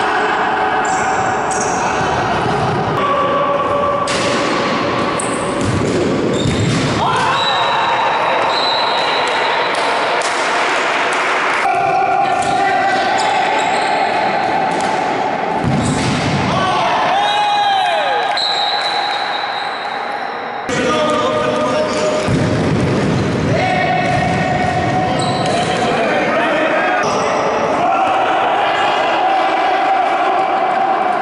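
Indoor futsal match sounds in a large sports hall: the ball being kicked and bouncing on the court, with players' voices calling out. The sound changes abruptly several times where the clips are cut together.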